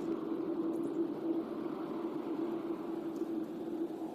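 Outdoor background with a steady, unchanging hum held on one pitch over an even low hiss.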